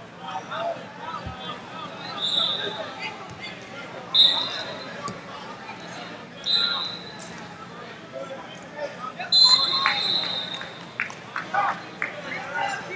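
Wrestling-hall ambience: unintelligible voices of coaches and onlookers calling out in a large room, with several short, high-pitched squeaks and scattered knocks.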